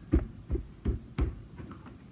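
Hands pressing and patting a clay fish down hard onto its template on a table to imprint a texture: four dull thumps about a third of a second apart.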